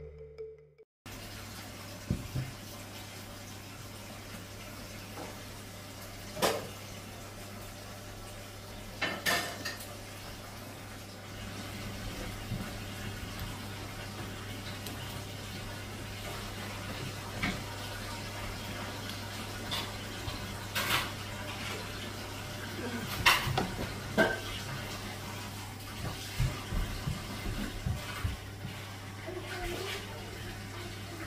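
A cardboard ice-cream tub being handled and turned in the hands: irregular knocks, taps and scrapes of fingers on the container, over a steady low hum.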